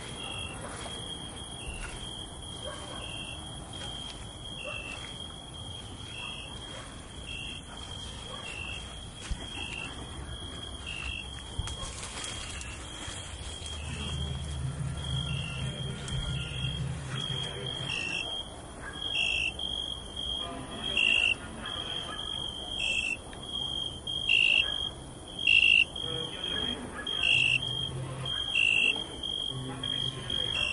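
Crickets chirping: a steady high trill with regular chirps about once a second, growing louder and quicker in the second half, with a brief low rumble about halfway through.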